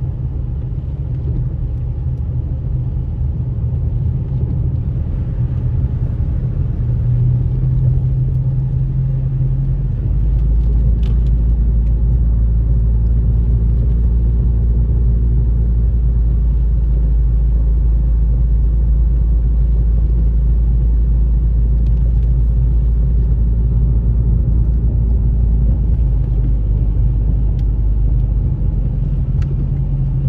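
Interior noise of a car being driven on a wet road: a steady low rumble of engine and tyres, which grows deeper and a little louder about ten seconds in, with a faint engine hum for a while after that.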